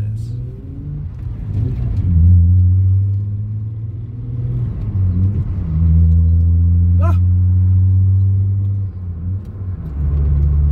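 Volkswagen car's engine heard from inside the cabin while driving, pulling through the gears: the drone rises and drops several times, then holds steady for a few seconds. A short rising chirp sounds about seven seconds in.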